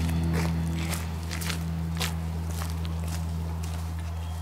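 Footsteps on a paved street, about two steps a second, over a low sustained note of background music.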